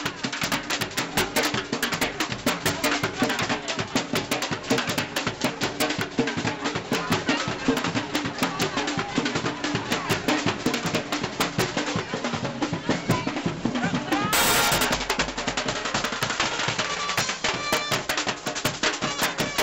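Street drum band playing a fast, driving rhythm on marching drums, with many strokes a second. There is a short, loud, noisy burst about fourteen and a half seconds in.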